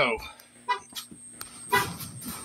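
A car horn giving short toots about a second apart, the second louder than the first.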